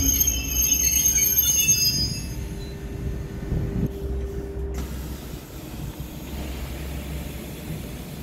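Renfe Series 450 double-deck electric commuter train rolling slowly into a station. Its wheels squeal in several high tones over a low rumble for the first two seconds or so, then it settles to a quieter steady rumble as it slows.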